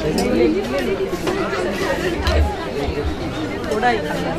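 Crowd chatter: many people talking at once, with several voices overlapping. A brief low rumble comes a little after two seconds in.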